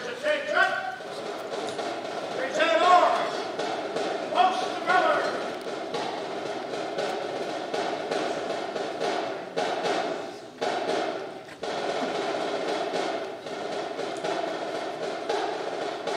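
Three short called-out drill commands in the first few seconds, then a snare drum playing a steady cadence while the colors are posted.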